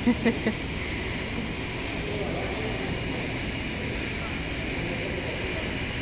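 Steady mechanical hum and hiss at an even level, with a few brief speech sounds in the first half second.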